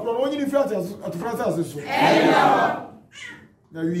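A man's voice in short, excited chanted phrases, then a loud, hoarse, drawn-out cry about two seconds in.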